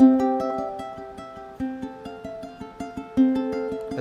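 Ukulele played fingerstyle in campanella style: single plucked notes on different strings ring on and overlap one another in a flowing melodic line.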